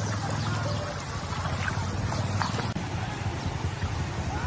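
Floodwater sloshing and trickling in a flooded street, over a steady low rumble.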